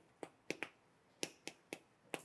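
Chalk tapping on a blackboard while numbers are written: about six short, sharp clicks spread unevenly over two seconds.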